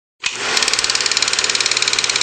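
Intro sound effect: a fast, even mechanical rattle over hiss, starting suddenly about a quarter second in.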